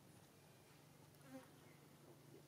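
Near silence with a faint, steady low buzzing hum and one soft tap about a second and a third in.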